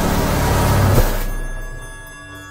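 Loud arena noise from boxing-match footage with a sharp hit about a second in, fading out into soft chiming music.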